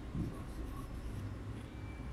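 A stylus writing on a touchscreen display: light scratching and tapping of the pen tip on the glass as words are handwritten, over a steady low hum.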